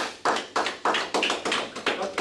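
Hands clapping in applause, a steady run of about five sharp claps a second.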